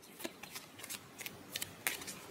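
Tarot cards being shuffled by hand: a run of faint, irregular light flicks and clicks of card against card.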